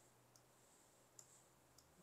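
Near silence: faint room hum with two faint, short clicks a little under a second apart.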